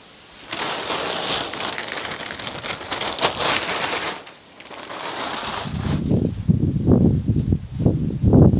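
Dry straw crackling and rustling close by as donkeys nose through the bedding, in two stretches. From about six seconds in there is a run of low, irregular thumps.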